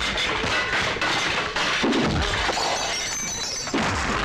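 Film fight sound effects: about three heavy punch impacts, with the strongest, a deep thud, about two seconds in, over dramatic background music.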